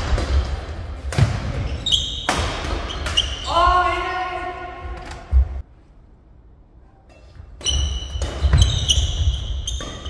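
Badminton doubles rally on an indoor court: sharp cracks of rackets hitting the shuttlecock and shoes squeaking on the court floor. A player's voice calls out about three and a half seconds in. Play goes much quieter for about two seconds past the middle, then the hits and squeaks resume.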